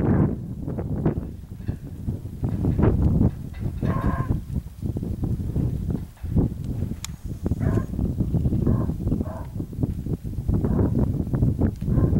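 Horses trotting on hard dirt, their hooves thudding irregularly, with wind rumbling on the microphone. A few short animal calls come through, one about four seconds in and a couple more near eight to nine seconds.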